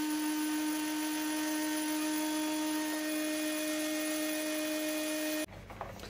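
Heat gun running steadily while heating a single lithium battery cell: a constant motor hum over a hiss of blown air. It cuts off suddenly about five and a half seconds in.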